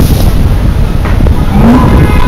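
Loud, steady low rumble of wind buffeting the microphone outdoors, mixed with street traffic noise.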